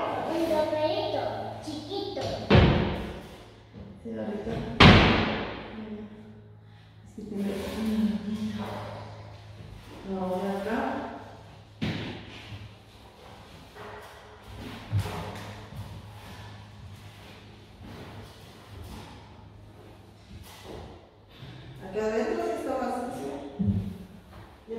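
Thumps and knocks from a wooden wardrobe being handled as its doors and panels are opened and moved: two loud thuds a few seconds in, then lighter knocks later.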